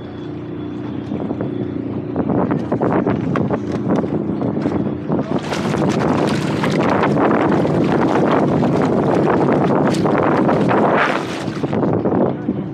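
Lake water rushing and splashing right against the microphone as the boat moves through it, building up and loudest from about five seconds in until near the end, over a low steady drone.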